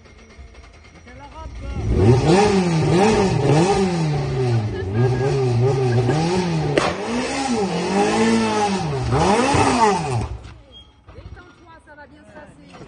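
A rally car's engine coming through a corner on a special stage, its pitch rising and falling over and over as the driver works the throttle and gears. It grows loud about two seconds in, with a sharp crack about seven seconds in, and drops away near the end.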